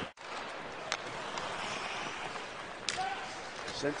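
Steady ice hockey arena crowd noise, with two sharp cracks from play on the ice, about a second in and near three seconds.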